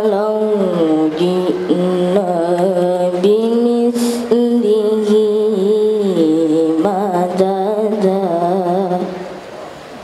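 A boy qari reciting the Quran in the melodic tilawah style through a microphone, holding long notes with wavering ornaments and slow glides between pitches. The phrase ends about nine seconds in.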